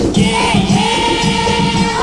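Umbanda ponto for Oxum on a 1988 LP: a choir holds a long sung note over a steady drum rhythm.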